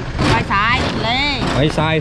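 Speech: voices talking in Thai/Lao, over a steady low background rumble.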